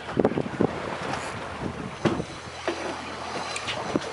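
Wind buffeting the microphone over the rush of open sea around a boat, with a low steady hum joining about halfway through.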